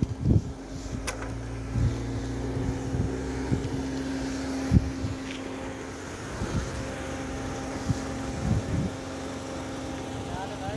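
A car's engine running close by, a steady hum, with a few low bumps of wind or handling on the microphone.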